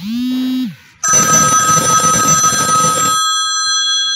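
A telephone-bell-like ring, loud: a clattering ring of about two seconds whose ringing tones hold on after the clatter stops. It is preceded by a short tone that rises and is held for under a second at the start.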